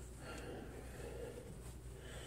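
Faint, soft rustling of damp terry towels being pushed into a corduroy cap, over a low steady hum.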